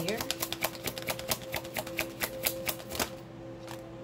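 A deck of tarot cards being shuffled by hand: a quick, even run of crisp card clicks, about six or seven a second, that stops about three seconds in.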